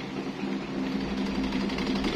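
Electric stand fan running: a steady motor hum with the whoosh of its spinning plastic blade, getting a little louder about half a second in.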